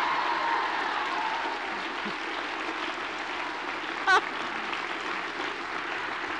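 Audience applauding, with one short cheer from a single voice about four seconds in.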